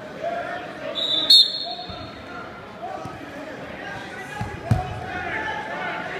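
Spectators and coaches shouting in a gymnasium, with a referee's whistle blown briefly about a second in to start the wrestling. A heavy thud of bodies hitting the wrestling mat comes later.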